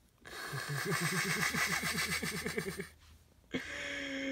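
A person laughing: a wheezy run of quick, breathy ha sounds, about six a second, lasting over two seconds, then a short hummed note near the end.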